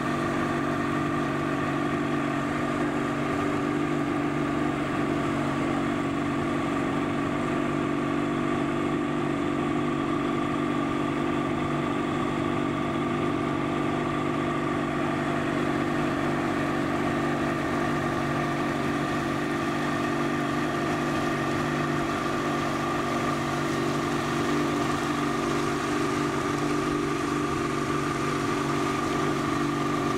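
115 hp outboard motor running at a steady, unchanging speed while the boat tows a tube.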